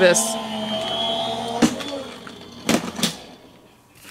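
Electric die-cutting and embossing machine running with a steady hum that fades out as it stops, followed by a few sharp clicks and knocks near the end, an odd end-of-run noise that is "not the best sound in the world".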